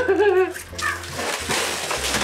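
A brief wavering vocal sound, then hissy rustling of styrofoam packaging and a plastic bag as a bagged figure is pulled free of its styrofoam shell.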